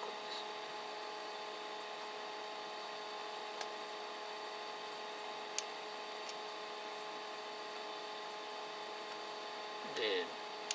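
Steady electrical whine of several fixed tones over a hiss, with two short clicks about two seconds apart.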